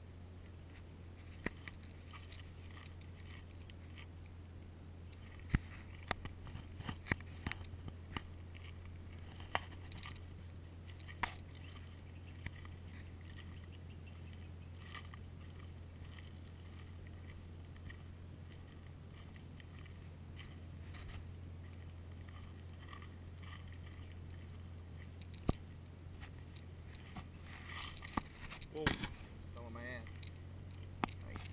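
Engine of a Mercedes G320 running at a steady low hum, heard from inside the cabin. Scattered sharp clicks and knocks sound over it, loudest about five and a half seconds in and again near the end.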